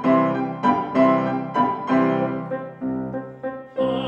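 Grand piano playing a classical accompaniment passage on its own, in repeated chords about two a second. A man's operatic singing voice comes back in just before the end.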